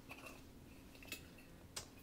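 Near silence: room tone with a faint steady hum and two faint clicks a little over half a second apart in the second half.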